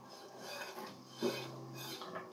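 Chopped onions being scraped and slid by hand off a plastic chopping board into a frying pan: a faint rasping rub of onion pieces against the board.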